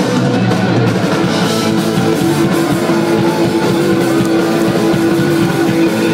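Punk-metal band playing live: distorted electric guitars and a drum kit at full volume, with a long held note through most of it. The sound is heard from in the crowd, thin in the bass.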